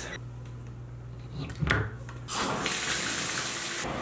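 Water running from a bathtub tap to fill the tub: a steady hiss that comes in suddenly a little past halfway and cuts off just before the end. Before it there is a low hum and a brief knock.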